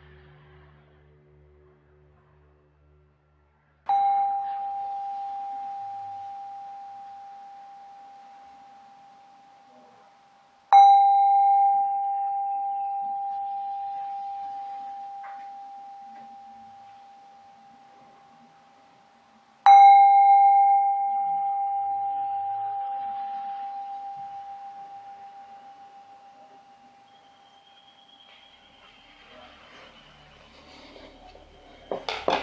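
A small metal singing bowl is struck three times, about seven and then nine seconds apart. Each strike rings one steady tone that fades slowly, marking the end of a sitting meditation.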